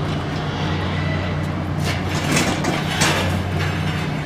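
A steel two-wheeled carcass cart and a dead hog being set down on a concrete floor: a few short scraping, rattling noises about two, two and a half and three seconds in, over a steady low hum.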